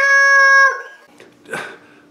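A man's high falsetto puppet voice holding one long, level note, a drawn-out "hello" that stops about three quarters of a second in. A short, fainter breathy sound follows about a second and a half in.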